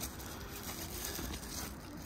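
Faint rustling and handling noise as a bubble-wrapped hookah bowl and heat-management top is held and turned in the hand, with a few light crinkles.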